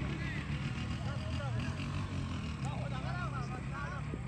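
Distant, indistinct voices over a steady low rumble.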